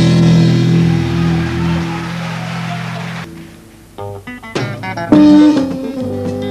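A live Congolese band's final chord is held with bass and guitars and fades away over about three seconds. After a short pause, an electric guitar starts picking a new line of single notes.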